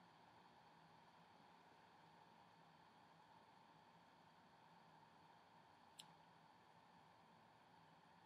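Near silence: faint room tone, with a single short click about six seconds in.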